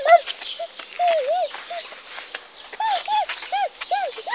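A toddler's voice close by: a string of short, high-pitched, rising-and-falling squeals and babbles, pausing for about a second midway. There are small clicks mixed in.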